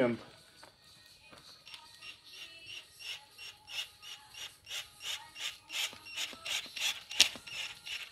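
Cordless drill-driver run in short repeated bursts, driving a screw into wood: a rasping stroke about three times a second, growing louder, with the loudest one near the end.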